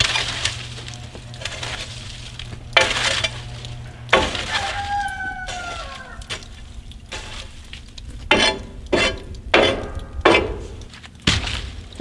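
Firewood being loaded into the open firebox of a Central Boiler outdoor wood furnace: a string of knocks and thuds as logs hit the steel box, with a falling metallic scrape about five seconds in. Under it runs the hiss of the fire and a steady low hum that fades after about four seconds.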